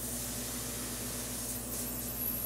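Air hissing steadily out of the pinched neck of an inflated rubber balloon, with no clear whistle tone.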